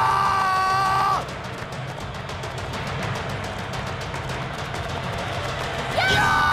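A man's loud, held battle cry on one steady pitch for about a second at the start, then background film music; a second identical cry starts right at the end.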